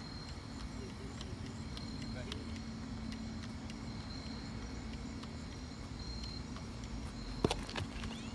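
Steady low outdoor background rumble with a faint constant hum, then two sharp clicks close together near the end.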